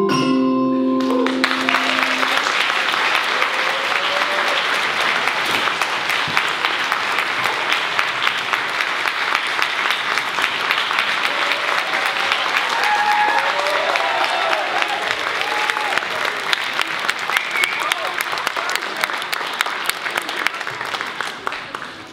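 The last notes of a children's ensemble of mallet instruments (xylophones and metallophones) ringing out for about two seconds, then an audience applauding, with a few voices among the clapping; the applause fades near the end.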